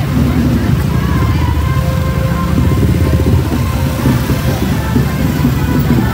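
Motor scooters and motorcycles running at walking pace close by, a steady low engine drone, mixed with crowd voices and music.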